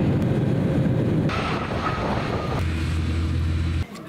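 Jet airliner engine noise heard inside the cabin: a loud, steady rushing drone. It shifts about a second in and again about halfway through, where a deep low hum comes in, and it cuts off just before the end.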